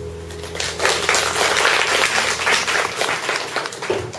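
Audience applauding. The clapping starts about half a second in, just as the last held keyboard chord of the song fades out, and dies away near the end.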